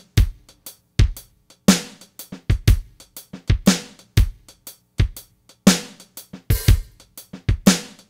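Shuffle drum-kit groove with kick, snare, hi-hat and cymbal, played back at a steady 120 beats per minute by a General MIDI synth. It is a single groove clip that repeats over and over.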